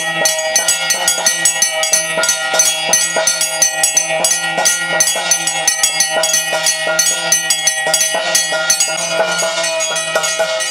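Traditional temple ritual music: fast, even drumbeats under a steady held melody, accompanying a naga worship ceremony.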